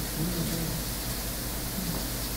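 Steady background hiss with a faint low hum, the noise floor of a pulpit microphone recording during a pause in speech.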